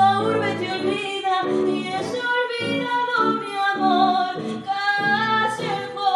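A woman singing a tango, accompanied by an archtop electric guitar playing a steady stream of notes.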